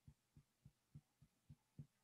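Fingertips tapping on the upper chest by the collarbone, soft dull thumps at a steady pace of about three to four a second: the rhythmic tapping of an EFT acupressure point.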